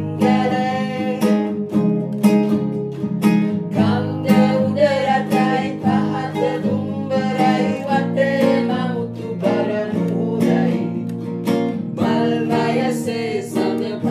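Nylon-string acoustic guitar and ukulele strummed in a steady rhythm while a man and a woman sing a Sinhala song together.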